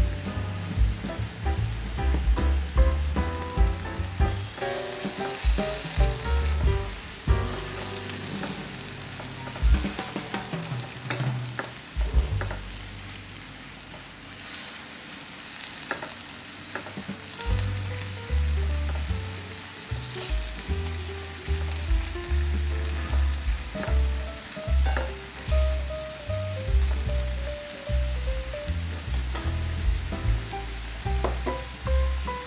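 Beef and onions sizzling in teriyaki sauce in a nonstick frying pan, stirred now and then with a utensil that clicks against the pan. Background music with a steady bass line plays underneath.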